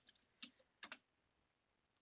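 A few faint computer keyboard keystrokes within the first second.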